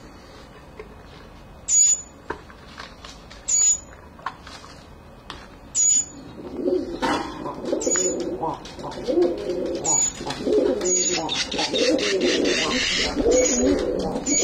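Caged fledgling birds, a young northern mockingbird and a barn swallow chick, giving short high begging chirps about every two seconds. About halfway through, a louder, lower wavering sound joins in and keeps going.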